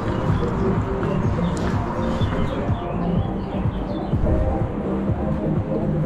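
Music playing over the low bumps and rattle of a Cube electric mountain bike being wheeled down concrete steps, with a few short bird chirps.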